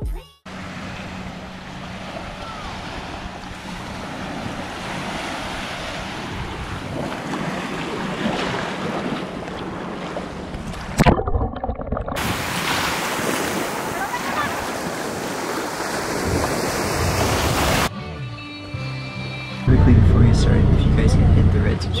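Steady wind and surf noise, then from about halfway a louder, brighter rush of water heard underwater. In the last couple of seconds the low, steady running of an outrigger boat's engine takes over.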